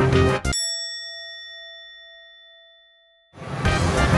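A single bell-like ding rings out clearly about half a second in and fades away over nearly three seconds, with the background music cut to silence around it.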